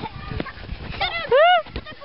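Children at play on grass: a child's loud, high shout that rises and falls in pitch a little over a second in, among short knocks of footsteps and a football being kicked.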